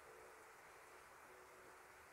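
Near silence: faint room tone and hiss, with faint steady tones.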